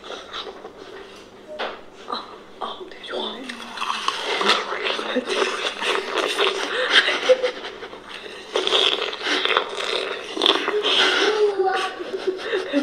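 Several women's voices talking, played back from a video clip, with light laughter.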